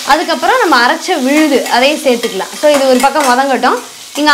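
Steel spatula stirring and scraping in a stainless-steel kadai as small onions, garlic and curry leaves fry in oil.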